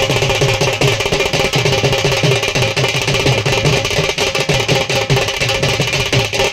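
Drum music with a fast, steady beat, several strokes a second, with a few held tones above it.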